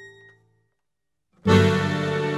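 Chamamé on classical guitar and accordion: the last plucked notes ring out and die away into about a second of silence, then a loud held accordion chord comes in about one and a half seconds in and sustains.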